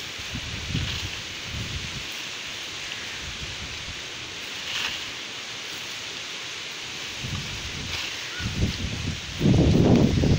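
Mango tree leaves and branches rustling as a long bamboo fruit-picking pole with a cloth net is pushed among them, over a steady outdoor hiss. The rustling comes in uneven bursts and is loudest near the end.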